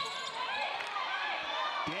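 Basketball shoes squeaking on a hardwood court as players move and jostle under the basket, many short squeals overlapping, with a ball bouncing.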